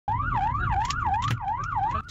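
Police car siren sounding in a fast up-and-down wail, about two to three sweeps a second, over the car's engine and road rumble during a pursuit.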